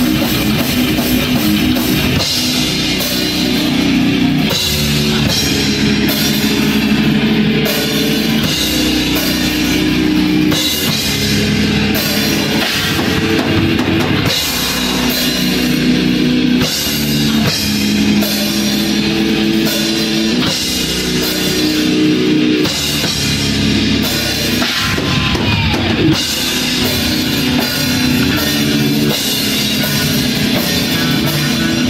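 Death metal band playing live and loud: distorted guitar and five-string bass riffs over a drum kit, the low notes changing every couple of seconds, with no break.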